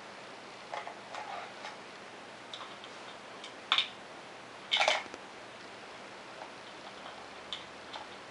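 Plastic spoons and a plastic bowl being handled, clicking and clacking against each other: a few light clicks, then two louder clacks about a second apart in the middle, and one faint click near the end.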